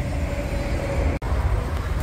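Steady low rumble of outdoor background noise, with no one speaking. It cuts out abruptly for an instant a little past a second in.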